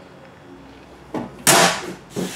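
The metal cover door of an electrical breaker panel being swung shut, with a light knock and then a sharp clack that dies away quickly.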